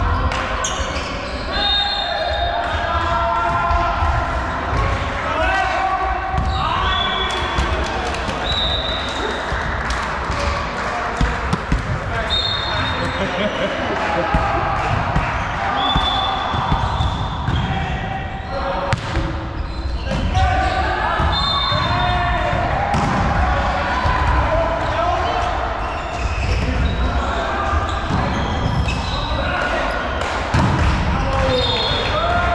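Indoor volleyball rally: players shouting and calling to each other, with repeated hits and bounces of the ball, echoing in a large sports hall.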